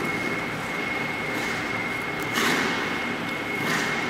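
Ice skate blades scraping the ice in backward C-cut pushes, with two swells of hiss about two and a half seconds in and near the end, over a steady rink hum with a thin high whine.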